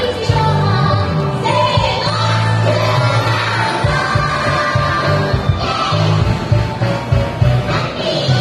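A woman singing a pop song into a microphone over a loud backing track with a continuous bass line, played through stage speakers.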